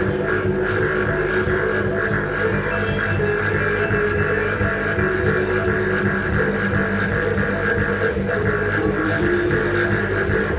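Live experimental music from keyboard and upright double bass: a slow, droning passage of steady held low notes with slowly shifting tones above them.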